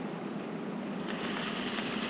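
A hand-held sparkler catching light and fizzing with a steady high hiss from about a second in, after a stretch of low steady background noise.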